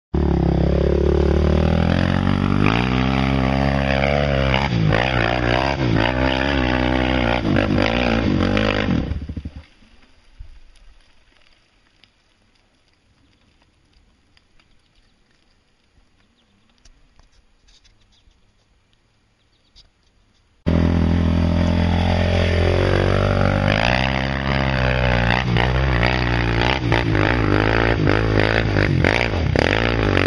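Suzuki Z400 quad's single-cylinder four-stroke engine revving hard up and down as it climbs a steep dirt hill. The engine sound cuts off abruptly about 9 s in, near silence follows for about 11 s, then it comes back suddenly at full revs about 21 s in.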